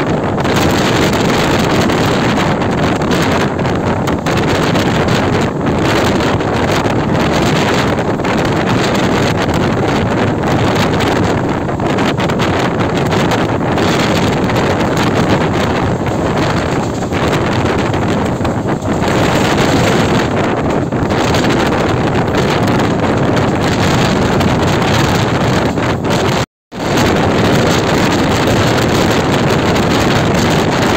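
Wind buffeting the microphone over the steady rumble of a passenger train running at speed, heard from an open coach door. Near the end the sound drops out completely for a split second.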